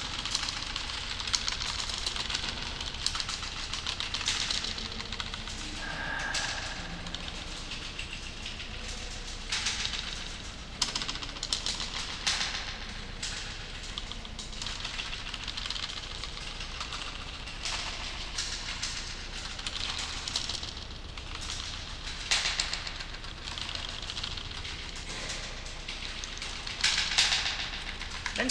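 Typing on a computer keyboard: an irregular run of key clicks in quick clusters, with short pauses between them.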